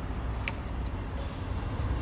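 A steady low rumble from an idling diesel truck engine, with a faint click about half a second in.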